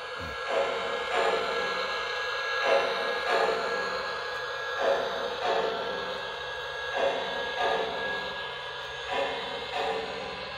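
Lionel LionChief John Deere 0-8-0 O-gauge toy train running on its track. Its locomotive sound system plays a regular beat of about three pulses every two seconds over a steady faint tone.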